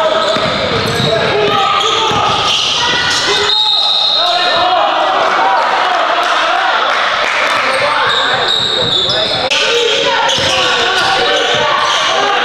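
Live gym sound of a basketball game: a basketball bouncing on the hardwood court under indistinct, overlapping voices of players and onlookers in a large echoing hall. The mix changes abruptly twice, where clips are cut together.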